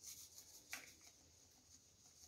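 Near silence with a few faint, soft rustles, the clearest about three-quarters of a second in, from hands seasoning a raw chicken.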